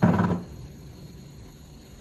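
A person's voice: one short, loud vocal sound, like a low grunt, lasting about half a second at the start.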